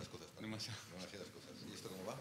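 Faint, indistinct talk from people speaking quietly off the microphone.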